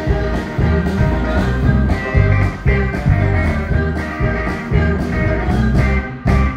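Live soul and rock band playing at a dancing tempo, with electric guitars, bass and a steady drum beat, and a woman's voice singing over it.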